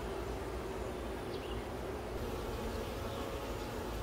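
Honeybees buzzing steadily from an open hive, with a low, even hum.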